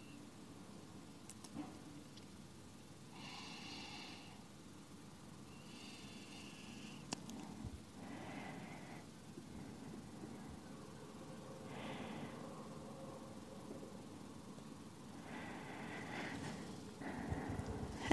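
A person breathing slowly and faintly, about five soft breaths a few seconds apart: deliberate breathing while holding a yoga stretch. A faint steady room hum sits underneath.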